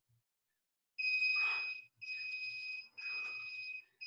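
Electronic interval timer beeping once a second: three steady, high-pitched beeps of nearly a second each, starting about a second in. They count down the end of a workout round.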